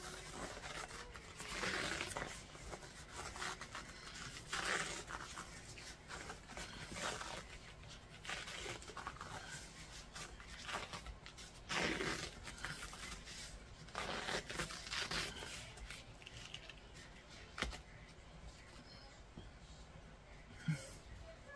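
Self-adhesive medical wrap being pulled off the roll and stretched around a rifle stock: a series of irregular rasping, tearing pulls a few seconds apart, with one sharp click near the end.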